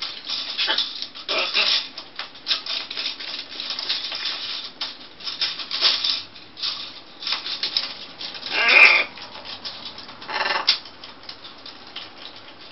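Plastic bracelets clicking, rattling and scraping against each other and a PVC post as two macaws work them with their beaks, in irregular bursts. The loudest clatter comes about nine seconds in.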